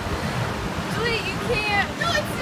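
Air from large pedestal fans buffeting the microphone: a steady low rumbling wind noise. A high voice cuts in briefly about a second in.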